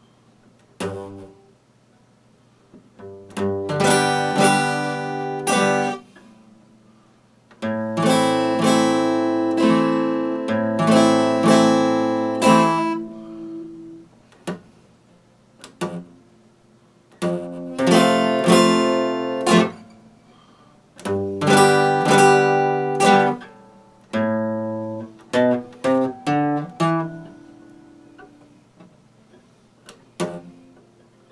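Epiphone acoustic guitar strummed in short phrases of ringing chords, each a few seconds long, with pauses of a second or two between them. A quick run of short, separate chords comes near the end.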